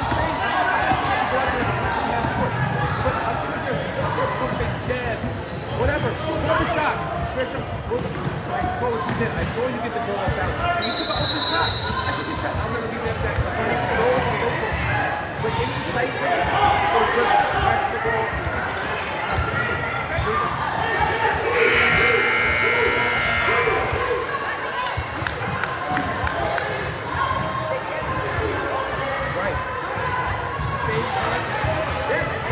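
Basketball game in a large gym: a ball bouncing on the hardwood court amid spectators' voices. A short high whistle blast comes about a third of the way in, and the scoreboard buzzer sounds for about a second and a half two-thirds of the way through.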